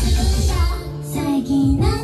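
Idol pop song played loud over the venue sound system, with high female vocals over an electronic backing track. The heavy bass beat drops out just under a second in, leaving sustained chords and the voices.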